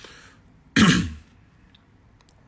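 A man clearing his throat once, a short harsh rasp about a second in that lasts about half a second.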